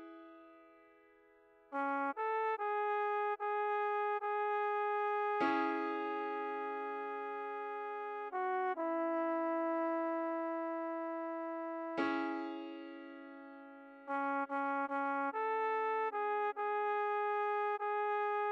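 Synthesized trombone playing a slow melody over piano chords: runs of short repeated notes, a long held note, then more short runs. Piano chords are struck about five seconds in and again about twelve seconds in, each fading away.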